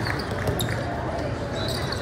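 A basketball being dribbled on a hardwood court, a few sharp bounces over the background of voices in the hall.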